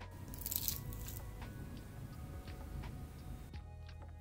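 A freshly baked coconut cookie being broken in half by hand: a sharp crackle of the crisp crust about half a second in, then softer crumbling and tearing of the tender inside for a few seconds. Background music plays throughout.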